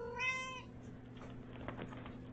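A kitten meowing once: a short, clear meow lasting about half a second at the start. It is followed by faint scratchy rustling as the kitten claws and kicks at a fabric toy on the rug.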